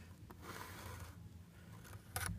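Faint handling noise of a cardboard box, soft rubbing with a light click about a third of a second in.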